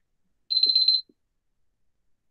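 A single high-pitched electronic beep about half a second long, starting about half a second in.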